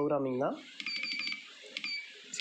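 Several short, high beeps from the Essae SI-810PR scale's keypad as its Down menu key is pressed repeatedly to scroll the menu, starting about half a second in.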